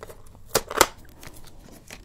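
Two sharp clicks about a quarter of a second apart, close to the microphone, as the hair dye kit is handled.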